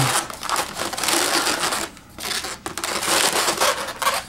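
Latex modelling balloons rubbing against each other and against hands as they are twisted and wrapped into place, a dense rustling with two short breaks around the middle.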